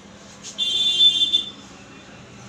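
A shrill buzzing tone sounds once, starting sharply about half a second in and cutting off about a second later.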